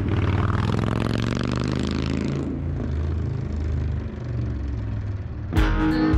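Dodge Challenger's engine running, with a rushing road noise over the first couple of seconds that then fades, leaving a low steady hum. Strummed guitar music starts shortly before the end.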